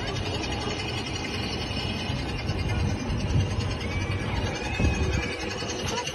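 Low steady rumble of a small amusement-park ride car running along its guide-railed track, with a few faint high-pitched squeals about four to five seconds in.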